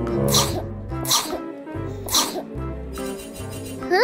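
Three sneezes in the first two and a half seconds, over light children's background music.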